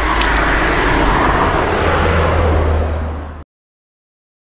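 A car driving past on the road, steady engine and tyre noise with a low rumble, cut off abruptly about three and a half seconds in.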